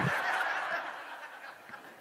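Congregation laughing at a punchline: an even wash of many voices that fades away over the two seconds.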